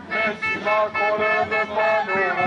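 A sung chant over music, in held notes that step up and down in pitch.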